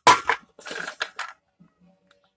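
Hubcap center caps clattering against each other as they are handled and set down on the pile: a sharp knock at the very start, then a few rattling clanks over the next second.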